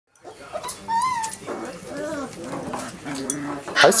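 Dogs whining: a high whine that rises and falls about a second in, then several shorter, lower whines.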